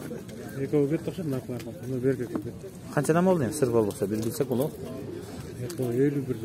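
Indistinct voices of people talking in the background, with a louder wavering call about three seconds in.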